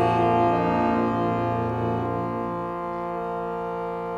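Harmonium holding a sustained, slowly fading chord, its lowest notes dropping away about three seconds in.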